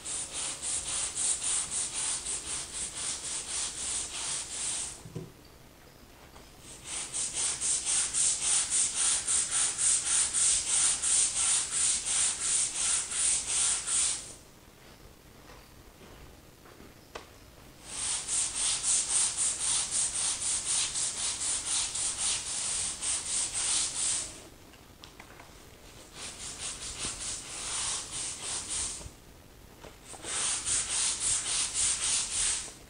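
Stiff-bristled grout brush on a long pole scrubbing the grout lines of a ceramic tile floor, rapid back-and-forth strokes about four or five a second. It comes in four spells of scrubbing with short pauses between them.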